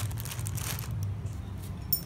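A brief rustle about half a second in and a sharp click near the end, over a steady low hum.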